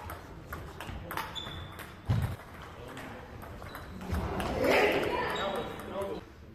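Table tennis ball clicking off bats and table in a short rally, the hits about a second apart, with a heavier thump about two seconds in. A person's voice rises from about four seconds in, echoing in the sports hall.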